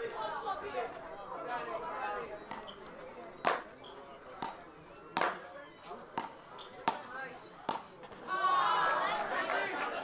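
A rally of road tennis: wooden paddles and a felt-stripped tennis ball make about six sharp knocks, roughly a second apart, over crowd murmur. Spectator voices swell near the end.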